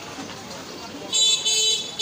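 A high-pitched vehicle horn honks about a second in, two blasts close together, over low street noise.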